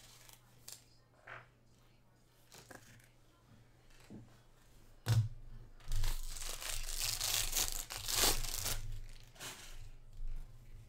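A knock about five seconds in, then nearly three seconds of crinkling and cutting as the foil wrapper of a Topps jumbo baseball card pack is opened with scissors and the cards are pulled out, with a shorter rustle near the end.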